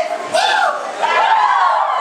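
A man's voice amplified over a PA system in a large hall, with a single hand clap about half a second in.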